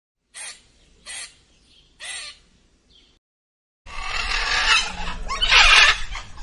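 A squirrel chirping: three short, sharp calls about a second apart, then a fainter fourth. After a brief gap, a zebra calls with a long, loud, harsh bray that grows loudest near the end.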